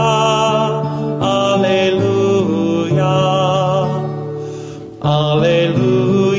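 A man singing long held notes with vibrato over a strummed acoustic guitar. The voice dips briefly just before five seconds in, and a new sung phrase starts right after.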